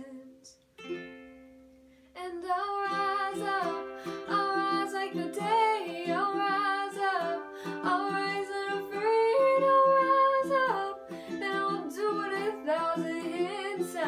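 A woman singing a slow song while strumming a ukulele in a steady rhythm. After a brief lull near the start, the strumming and voice come back in, with a long held note past the middle.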